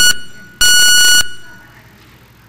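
Electronic speaking-time timer in a council chamber giving two high beeps, the second about 0.6 s long and starting about half a second in, each trailing off in the hall's echo. It signals that the councillor's speaking time is up.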